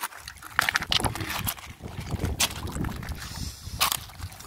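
Footsteps and handling on a bank of loose river pebbles: a few sharp stone clicks and knocks over a low rumble of wind on the microphone.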